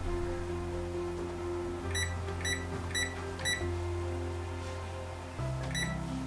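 Soft background music with sustained chords. Over it, four short high beeps from a Texecom alarm keypad's keys come about half a second apart in the middle, and one more near the end.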